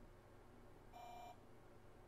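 A single short beep about a second in from the TRS-80 Model 4's speaker: the terminal program's signal that a received XMODEM block failed its CRC check. Otherwise near silence.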